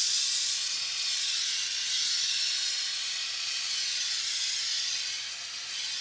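Hand sprayer on a garden hose fitting spraying a fine jet of water onto photoresist film on a washout board, a steady hiss that eases slightly near the end. The water is washing out the unexposed photomask to open the stencil.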